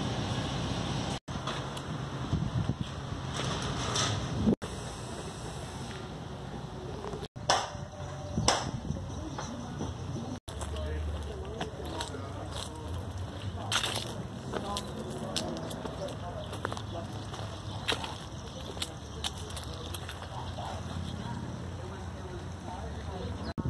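Low wind noise on the microphone with indistinct voices now and then, broken by four brief dropouts to near silence.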